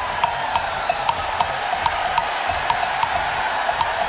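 Live drum-kit percussion: short, sharp strikes about three a second, over a steady wash of background noise.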